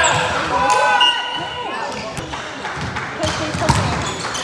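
Indoor volleyball rally in a large gym: players' voices calling out in the first second or so, and sharp smacks of the ball being hit, the clearest one near the end.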